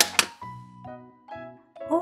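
Two sharp clicks of plastic domino tiles being set down on a table, then soft background music with a few held notes.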